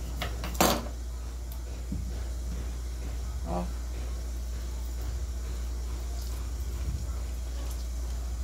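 Kitchen handling sounds: one sharp clack of dishes or utensils less than a second in, then a few faint taps, over a steady low hum.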